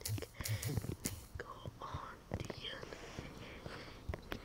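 A person whispering softly, in short broken bursts that are strongest in the first second or so and fainter after.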